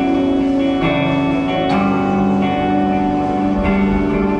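Live band playing an instrumental passage: electric guitars ring out sustained chords over bass guitar and drums, the chord changing every second or so.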